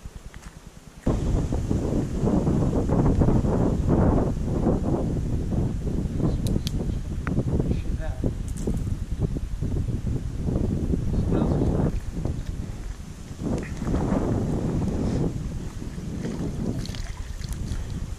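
Wind buffeting the microphone, a loud low rumble that starts suddenly about a second in and rises and falls unevenly.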